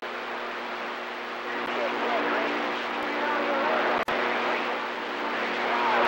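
CB radio receiver hiss and static with a faint, garbled voice coming through from about a second and a half in, over a steady low hum. The audio drops out briefly about four seconds in.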